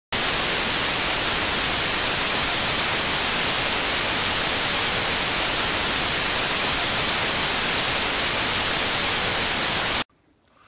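Loud, steady hiss of television static, like a TV tuned to no channel. It cuts off suddenly.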